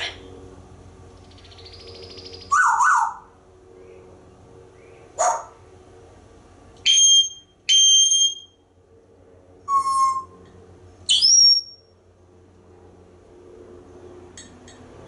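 African grey parrot whistling and calling: about six separate short calls with pauses between. They include two clear, matching whistles in quick succession midway and a whistle that rises in pitch near the end.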